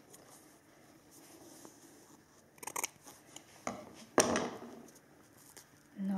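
Athletic tape being handled and pulled from the roll: quiet rustling, then short crackling rips near three seconds in and a louder sudden tearing crackle about four seconds in.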